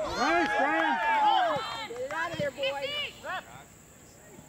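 Several voices shouting at once in overlapping yells, loudest in the first two seconds, then thinning to a few single shouts before dying down near the end.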